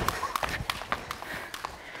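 Skipping ropes slapping a sports-hall floor and feet landing as two people jump rope while practising double-unders. The result is a rapid, uneven clatter of sharp ticks that thins out toward the end.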